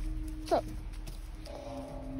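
A single short, high dog yelp, falling quickly in pitch, about half a second in. Under it runs a low steady drone of ambient music that drops to a lower note near the end.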